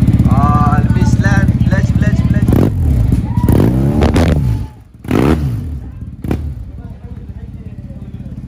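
Yamaha TMAX 530 parallel-twin engine running loud through its exhaust. It is revved in several blips, the pitch rising and falling each time, at about two and a half, four, five and six seconds in.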